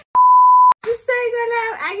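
Electronic test-tone bleep: one steady pitch lasting about half a second, cut off abruptly with a click.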